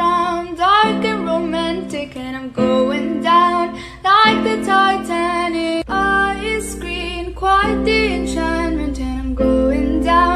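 A song: a woman singing a melody in short phrases over acoustic guitar.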